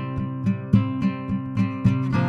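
Acoustic guitar strummed in a steady rhythm, about three strokes a second, over held chords in an instrumental stretch of a folk-country song.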